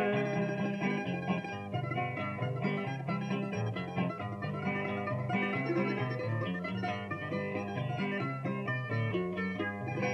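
Instrumental interlude of Cuban punto guajiro between sung improvised décimas: a plucked-string band of guitar and laúd strumming and picking a steady rhythmic accompaniment over a repeating bass line.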